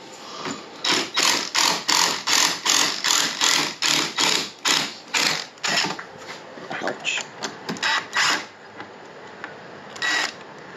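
Cordless impact driver turning a long screw in a door jamb in a rapid series of short bursts, about three a second, stopping shortly before the end.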